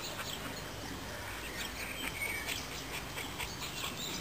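Dogs at play: a Dogue de Bordeaux and a Boxer making faint dog noises over a steady outdoor hiss. A few short high chirps come through, one held a little longer about two seconds in.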